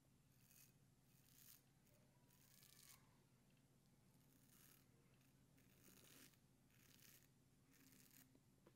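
Faint scratchy strokes of an 8/8 Spanish-point straight razor cutting through five days of beard stubble on a lathered cheek, about one short stroke a second.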